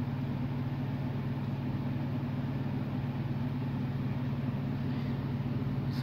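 A steady, unchanging low hum of a running motor or fan.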